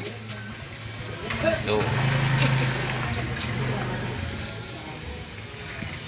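Gas burner of a commercial noodle boiler running: a steady low hum with a hiss of flame that swells a couple of seconds in and eases off toward the end.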